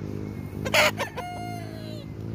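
A gamecock crowing, ending in a long held note that falls slightly in pitch, with a brief sharp noise about three-quarters of a second in.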